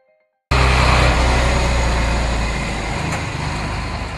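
Heavy truck engine running, starting abruptly about half a second in, with a deep rumble that eases about three seconds in.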